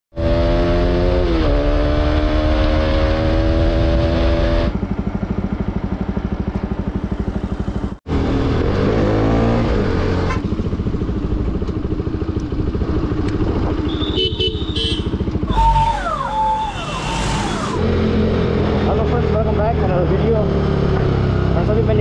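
Bajaj Pulsar RS200's single-cylinder engine running while the motorcycle is ridden, heard in several short clips that change abruptly. The engine note drops about a second in, then holds steady.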